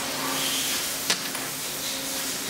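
A steady hiss with one sharp click about a second in, as the piston pump's cylinder barrel and pistons are handled on the bench.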